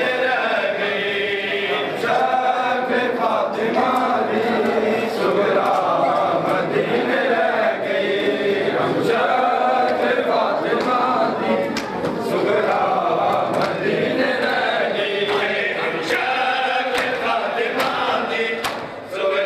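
A group of men chanting a noha, a Shia mourning lament, in unison, with the sharp slaps of hands beating on chests (matam) scattered through the chant.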